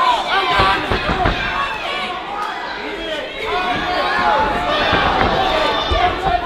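Fight crowd shouting and cheering, many voices overlapping, with a few dull thuds close together about a second in.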